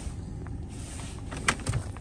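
A few sharp plastic clicks about one and a half seconds in as the centre-console storage lid is unlatched and lifted, over a steady low rumble in the car's cabin.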